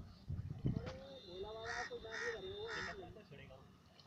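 A crow cawing three times, about half a second apart, over a distant voice, after a low rumble in the first second.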